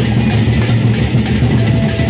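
Sasak gendang beleq ensemble playing: large barrel drums give a deep, steady pulse under continuous clashing of many pairs of hand cymbals.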